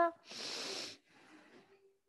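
A person hissing like a snake, a short sharp 'sss' lasting under a second, followed by fainter breathy noise.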